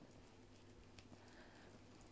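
Near silence: room tone with a faint steady low hum and a few very faint ticks.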